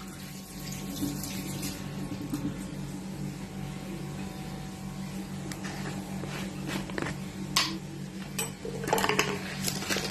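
A steady low hum in a small kitchen, with a few light clicks and knocks of kitchen containers being handled in the last few seconds.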